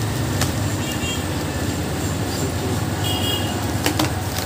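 Steady low background rumble, with two sharp clicks, one about half a second in and one near the end.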